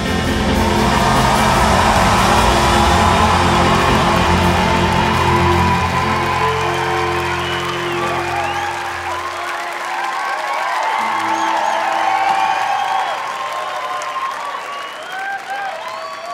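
A live band's final chord rings on and fades out about nine seconds in, while a concert audience cheers, whoops and applauds; the cheering and applause carry on after the music has died away.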